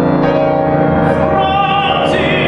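Classical tenor singing with grand piano accompaniment. The piano sustains chords, and the voice comes in about a second in with a wavering vibrato.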